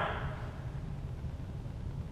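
Steady low rumble of background room noise in a large gym hall, with the echo of a man's voice dying away at the start.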